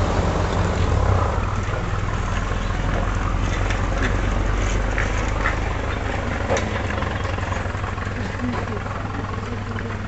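A vehicle engine idling with a steady low rumble that fades a little toward the end, with faint voices and a few light clicks over it.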